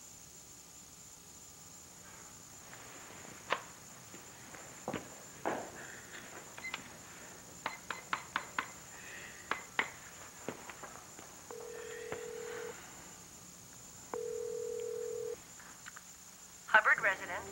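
Cordless telephone being dialed: a quick run of about eight keypad button presses, then two rings of ringback tone heard through the handset, each a steady tone about a second long.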